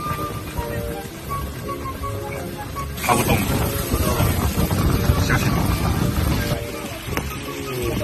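Background music with a light melody over fish pieces bubbling in oil and a little water in a frying pan. About three seconds in, the pan noise grows louder and rougher for a few seconds as the pieces are moved about.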